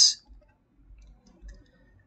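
A pause in a man's speech: the hiss of the last word's final 's' dies away at the start, then room quiet with a few faint clicks.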